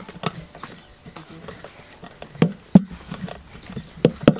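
Irregular clicks and knocks, with two sharp, louder knocks a little past the middle, about a third of a second apart.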